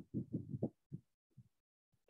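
A faint, muffled low voice: a few short murmured syllables, then silence in the second half.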